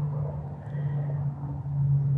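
A steady low hum over a faint background rumble, with no distinct events.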